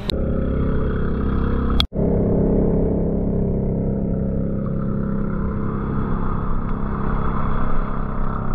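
Outrigger boat's engine running at a steady drone, with a faint high whine above it. It cuts out for an instant about two seconds in.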